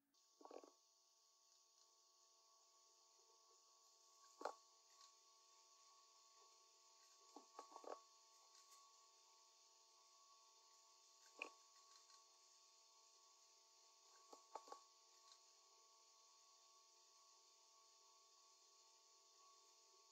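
Near silence: faint room tone with a few soft clicks, spaced several seconds apart.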